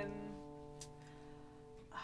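A guitar chord, struck just before, ringing on quietly and slowly fading away.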